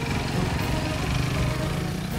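Motorcycle engines running as two bikes ride off.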